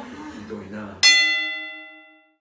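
A single struck bell chime, an added sound effect, hits sharply about a second in and rings out with several clear tones, fading away over about a second.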